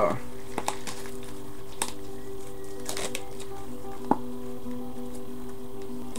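Scattered light clicks and crinkles from hands handling a baseball card box and its wrapped packs, over a steady sustained chord of background music.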